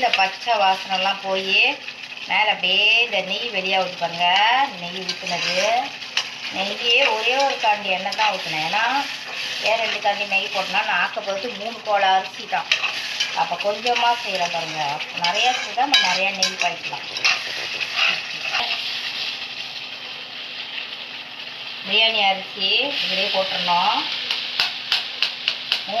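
Metal spatula stirring and scraping thick curry gravy as it simmers and sizzles in a pan, stroke after stroke, with a wavering squeal as it rubs the pan. The stirring eases for a few seconds a little after the middle, then picks up again.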